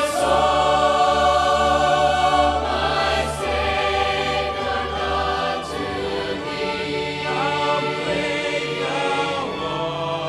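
Mixed choir singing a hymn with orchestral accompaniment of French horns, trumpets and strings, in held chords. A deep bass sounds under the first half and falls away about halfway through.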